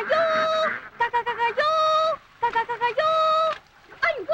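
A reedy wind instrument plays a bouncy phrase: a long held note alternating with a quick run of short, repeated lower notes, about every second and a half.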